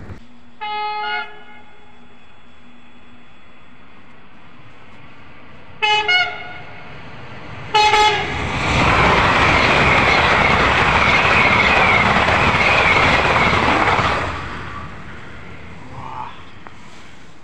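Siemens Velaro RUS "Sapsan" high-speed electric train sounding short horn blasts on its approach: one about a second in, two quick ones around six seconds, and another just before it arrives. It then runs through the platform at speed, with a loud rush of air and wheel noise lasting about six seconds before dying away.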